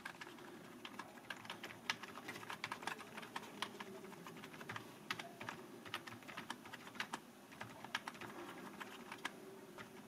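A cheap Fix Price membrane keyboard being typed on: a quiet, fast, irregular run of key presses.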